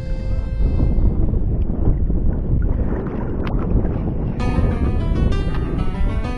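Background music breaks off for a few seconds of low rumbling wind noise on the microphone, with a couple of faint clicks. The music comes back in about four seconds in.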